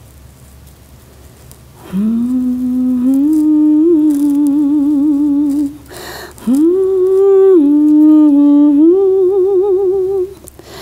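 A woman humming a slow lullaby tune beside a hanging cradle, in two long held phrases with a wavering vibrato and a short pause between them. The humming starts about two seconds in.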